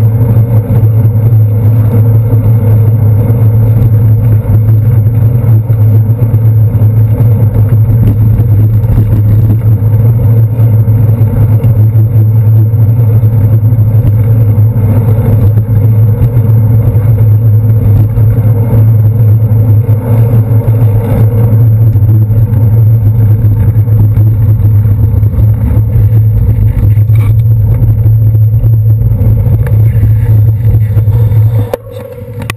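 Loud, steady low rumble picked up by a handlebar-mounted camera on a bicycle riding through city traffic, with passing cars and taxis blended in.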